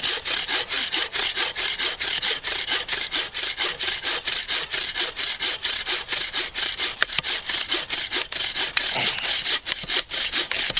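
Sawvivor folding bow saw cutting through a log by hand, in rapid, even back-and-forth strokes of about three a second, each stroke a rasping hiss of the teeth in the wood.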